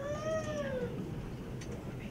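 A single high, meow-like cry that rises a little and then falls, lasting under a second.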